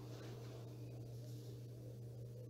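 Faint sizzle of hot oil as a wire skimmer full of fried boondi (gram-flour batter pearls) is held above the kadhai to drain, over a low steady hum.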